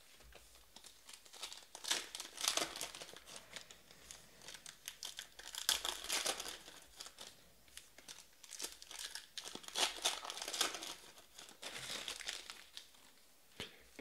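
Baseball-card pack wrappers being torn open and crinkled by hand, an irregular run of crackly rustles with a few short pauses.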